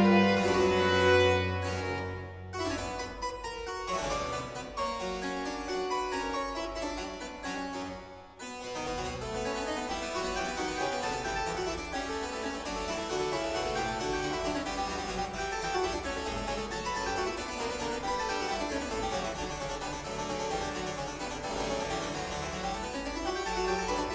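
Harpsichord playing a fast solo passage in a concerto's Presto finale, the string ensemble dropping out about two seconds in. Quick runs of notes rise and fall throughout.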